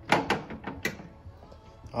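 A few sharp clicks and knocks in the first second, then a quieter stretch.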